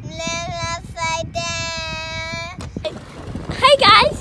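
A young girl singing along to music in her headphones, holding long, steady notes with short breaks between them, over a low rumble. Near the end a louder, higher, wavering voice breaks in.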